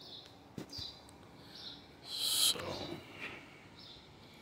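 Faint bird chirps, with one louder, hissy chirp about two seconds in.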